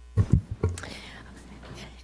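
A few soft, low thumps and rustles close to a microphone in the first second, then quiet room tone with a low hum.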